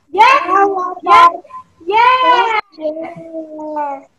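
A woman and young children singing together over a video call: short sung phrases with long held notes, broken by brief pauses.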